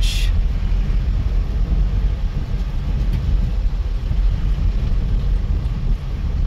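A car driving slowly, heard from inside the cabin: a steady low rumble of engine and road noise, with a brief hiss right at the start.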